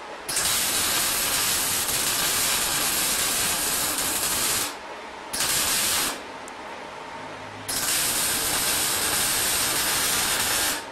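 Electric arc welding on steel, the arc crackling and sizzling in three runs that start and stop abruptly: a long one of about four seconds, a short burst of under a second, then another long one that starts about two-thirds of the way in.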